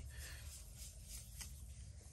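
Faint rubbing and a few light ticks of a hand working wax onto a steel axe head.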